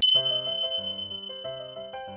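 An edited-in bell ding sound effect, struck once and ringing out slowly over about two seconds, over light background music.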